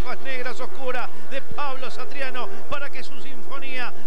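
A man's voice: continuous Spanish-language race commentary from a TV announcer.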